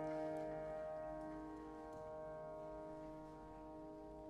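A grand piano chord held with the pedal, slowly dying away, with a few faint clicks over it.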